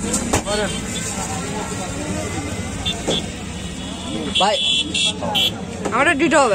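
Roadside traffic noise with nearby voices, and a few short high horn-like beeps a little before the end.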